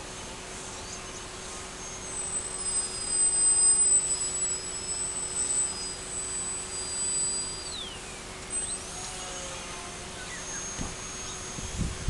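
RC delta-wing plane's motor and propeller heard from far off: a thin, high whine that holds steady, drops sharply in pitch about eight seconds in and climbs back up a second later.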